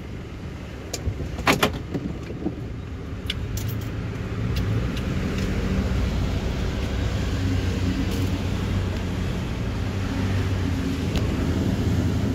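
Steady low rumble of a moving car heard from inside the cabin: engine and road noise, with a few short clicks or knocks about a second and a half in. The rumble grows a little louder after a few seconds.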